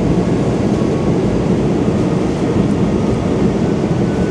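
Steady cabin noise of a Boeing 777-300ER airliner in cruise: an even, unbroken low rumble with a rushing hiss above it.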